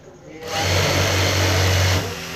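Industrial sewing machine running at speed, a loud steady hum that starts about half a second in and cuts off suddenly at the end.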